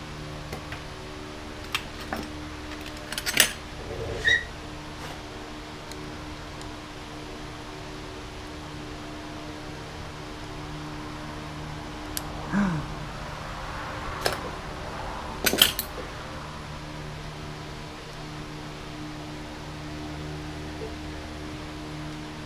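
Scattered metallic clicks and knocks of hand tools against a motorcycle carburetor bank over a steady hum, with the sharpest knocks about three seconds in and again about three-quarters of the way through.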